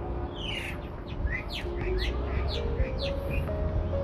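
A small songbird chirping a quick run of short, falling notes, about three a second, that stops shortly before the end. Soft background music and a low rumble run underneath.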